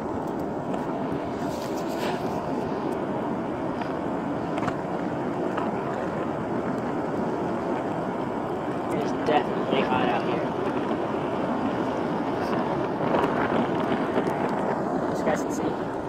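Skateboard wheels rolling on asphalt: a steady rumble with a few light clicks as the board rides over the street surface.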